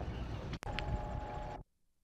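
Outdoor background noise with a low rumble, broken by a brief dropout and a sharp click about half a second in, then joined by a thin steady tone. The sound cuts off abruptly a little past one and a half seconds, leaving near silence, as a film soundtrack does at a splice.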